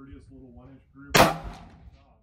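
A single shot from an Anderson AM15 Utility Pro AR-15 in 5.56 about a second in: one sharp crack with a short ring-out. Faint voices are heard underneath.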